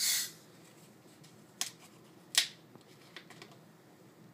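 A plastic Diet Coke bottle being picked up and handled before pouring: a short hiss at the start, then two sharp clicks, the second the louder.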